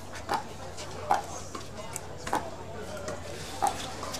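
Pickleball paddles striking the plastic ball back and forth in a rally: four sharp pops about a second apart.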